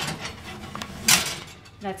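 Metal oven rack being slid out on its runners with a cornstick pan on it: a clatter at the start and a louder metallic scrape about a second in.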